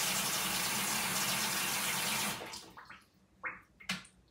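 Bathroom sink faucet running steadily, then turned off about two-thirds of the way through. A few short, quieter sounds and a sharp click follow near the end.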